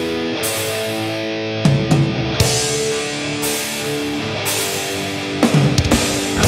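Black/doom metal instrumental passage: guitars hold slow, sustained notes that step from pitch to pitch, with a few drum hits about two seconds in and a short burst of drum hits near the end.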